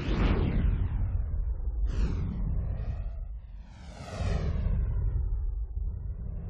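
Racing go-kart two-stroke engines passing one after another, each a high, buzzing whine that drops in pitch as it goes by. Near the middle one rises as it revs up and then falls away, over a steady low rumble.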